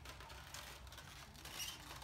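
Faint handling of a plastic egg carton: a few light clicks and rustles as it is closed and moved about.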